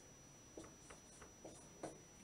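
Dry-erase marker writing on a whiteboard: faint short strokes, about five in two seconds, the loudest near the end.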